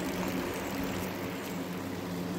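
A thin stream of water trickling onto the ground over a steady low hum.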